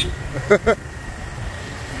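A vehicle horn cutting off at the start, then two quick short honks about half a second in, over the low rumble of a moped and wind on the road.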